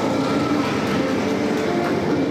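Roller skate wheels rolling over a hardwood gym floor: a steady rumble from four skaters moving together.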